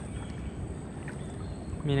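A small boat moving over calm water, making a steady, low hiss and rumble of water noise. A man's voice comes in near the end.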